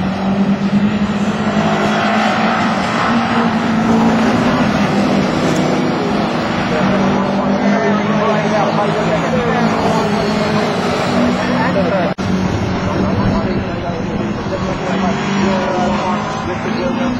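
Engines of several race cars running hard around a circuit, their pitch rising and falling as they accelerate, shift and pass. The sound drops out briefly about twelve seconds in.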